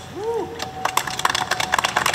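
Scattered hand clapping from a standing crowd starts about a second in and builds into applause. Before it there is a brief rising-and-falling tone.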